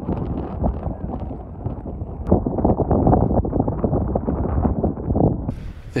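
Strong wind buffeting the camera's microphone on an open moor in bad weather: a loud, irregular rushing that cuts off suddenly near the end.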